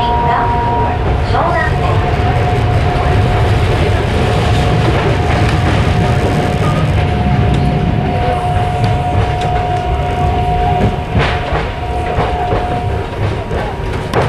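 Yokohama Municipal Subway 3000A train heard from inside the car while running at speed: a dense low rumble of wheels on rail under a steady high whine from its Mitsubishi GTO-VVVF traction inverter. The whine cuts off near the end, and a few sharp rail clicks come just before that.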